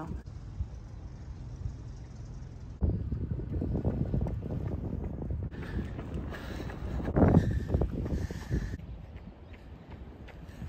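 Wind buffeting the microphone, a low rumble that grows louder about three seconds in.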